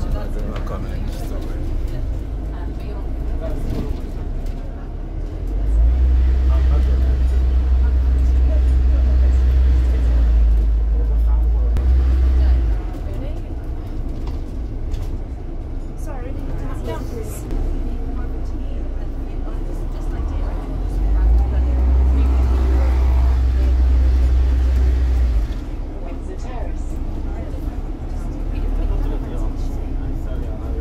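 Ride noise on the upper deck of a London double-decker bus in motion: a steady low rumble of engine and road. It swells much louder twice, for about seven seconds a third of the way in and for about four seconds two-thirds of the way in.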